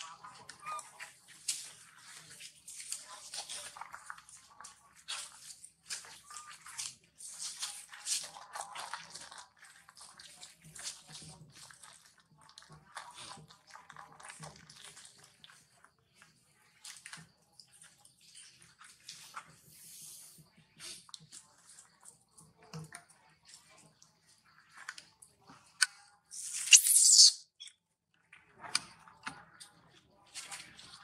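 Irregular rustling and crackling of dry leaf litter and twigs as macaques move and handle things on the ground. A louder harsh burst comes near the end.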